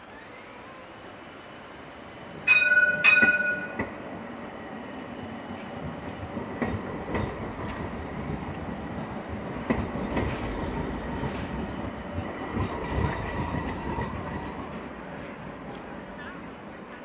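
A light rail tram passing along the street. About two and a half seconds in there are two loud ringing dings of its bell. A rolling rumble then builds and fades, with high wheel squeal over it.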